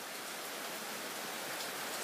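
Low, steady hiss of background recording noise with no other distinct sound.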